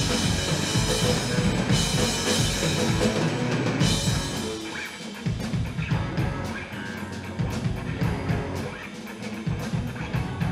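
Live rock band playing, with drum kit, electric guitars and bass guitar. The full band plays loud until about four seconds in, then drops back to a quieter, sparser groove with steady cymbal ticks over drums and bass.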